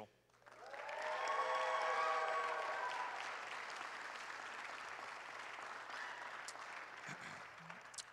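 Church congregation applauding a graduate. The applause swells in the first couple of seconds, then fades gradually over the next five.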